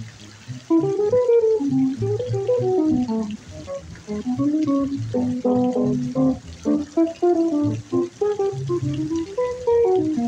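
Archtop jazz guitar playing an instrumental solo: a moving melodic line of plucked single notes and chords over low bass notes.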